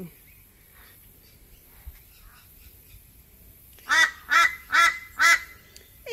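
A bird calling at a person to be fed: four short, loud, nasal calls in quick succession about four seconds in.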